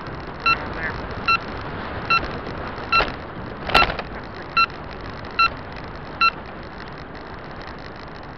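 Turn-signal indicator beeping in short pitched beeps about every 0.8 seconds through a turn, stopping a little after six seconds as the signal cancels. Steady road and wind noise runs underneath, with two sharp knocks about three and four seconds in.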